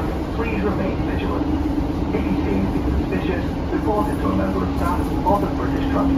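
Cabin noise inside a Class 150 Sprinter diesel multiple unit running at speed: the underfloor diesel engine's steady drone, which grows stronger about two seconds in, over the rumble of wheels on rail. Passengers are talking indistinctly in the background.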